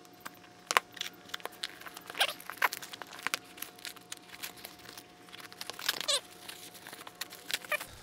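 A small knife cutting packing tape and cardboard as a parcel is opened, heard as a string of irregular clicks, scratches and tearing, with the crinkle of plastic packing being pulled aside.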